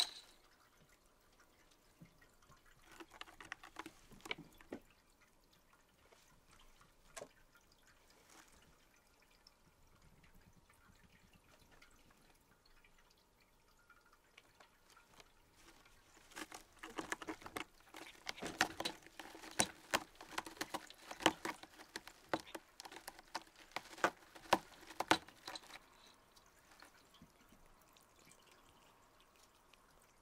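A cat's paws and claws scrabbling and tapping on a carpeted cat tower at close range. A few stray clicks come early, then a dense run of quick scratchy taps and scuffs about halfway through that lasts roughly ten seconds. Otherwise there is only faint room tone.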